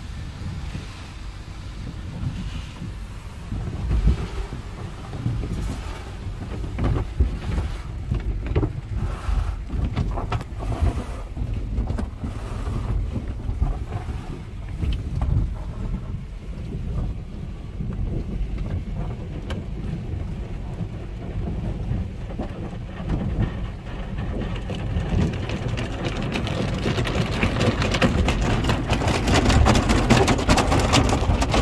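Vintage 1970s Sherman car wash tunnel heard from inside the car: a low rumble with irregular thuds as the cloth washing strips slap the body and roof. Water spray on the glass grows louder over the last few seconds.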